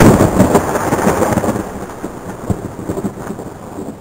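A thunderclap that breaks in suddenly and loudly, then rolls on with crackles, slowly fading.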